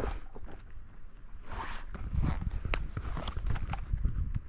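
Close handling noise: rustling, scuffing and scattered sharp clicks as a small fish on the line and the fishing gear are handled, with a few steps on a dirt bank.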